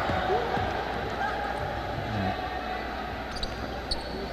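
Basketball bouncing on a hardwood court during play, over the steady hum of a large indoor hall with faint voices. There are short high squeaks near the end.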